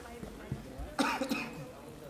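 A person coughs once, sharply, about halfway through, over low background chatter in a large room.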